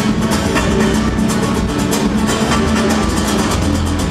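Live band playing: several strummed nylon-string and acoustic guitars in a fast, driving rumba rhythm over bass guitar and drums.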